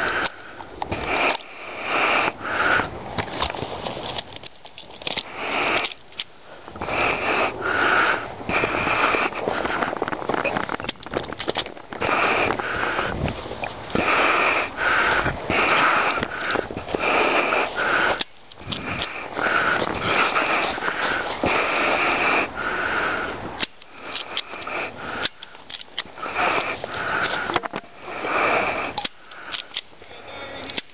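A person breathing hard and fast close to the microphone, quick breaths in and out about once a second with a few short pauses, like panting from exertion.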